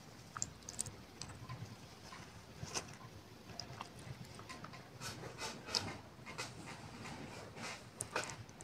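Faint, irregular crackling and popping of a masala curry base in a frying pan as water is added and heats on the gas flame, with a few light knocks of a wooden spoon against the pan.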